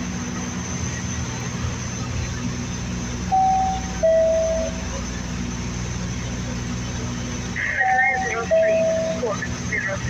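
Steady drone of a Dash 8 Q200's twin turboprop engines and propellers heard inside the cockpit. A two-note chime, high then lower, sounds twice: about three seconds in and again about eight seconds in.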